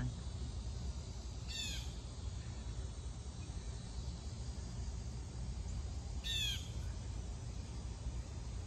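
A bird calling twice, about a second and a half in and again about six seconds in, each call a quick run of a few falling notes, over a steady low background rumble.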